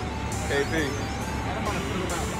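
A man speaking over background music, with a steady low rumble underneath.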